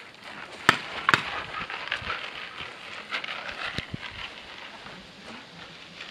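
Paintball markers firing: two sharp pops less than a second apart about a second in, another near the four-second mark, and scattered softer clicks between them.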